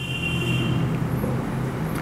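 Marker squeaking faintly on a whiteboard as words are written, a thin high tone lasting about a second, over a steady low background hum.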